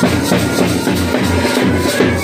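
A street band playing a Tamil film song: a bass drum and side drums beat steadily at about four strokes a second under a sustained melody line.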